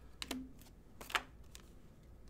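A few faint clicks and flicks of trading cards being flipped through by hand, the sharpest about a second in.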